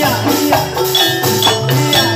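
Gamelan music in jaranan style: struck metallophones ringing in a quick, even rhythm over drums whose low notes bend in pitch.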